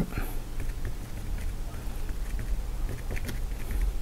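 Faint light taps of a paintbrush dabbing paint onto canvas, a few small ticks clustered about three seconds in, over a steady low hum.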